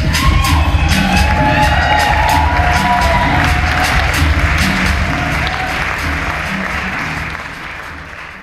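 Afrobeat dance music with a heavy, steady bass beat, under audience applause and cheering with a few whoops. The cheering is loudest in the first few seconds, and everything fades out near the end.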